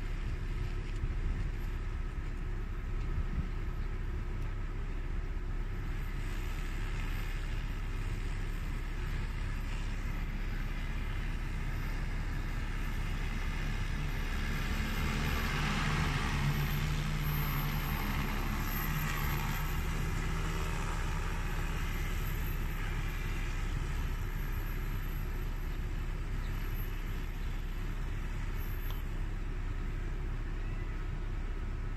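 A large agricultural crop-spraying drone flying its spraying pass: a propeller hum that swells to its loudest about halfway through and then fades as it passes and moves away, over a steady low rumble.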